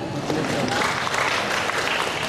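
Audience applauding steadily, a dense patter of many hands clapping.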